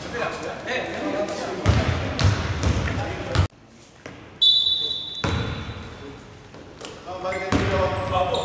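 Indoor basketball court sounds: a ball bouncing on the hardwood floor among voices in the hall. About halfway through the sound drops out briefly, then a short steady high tone like a whistle follows.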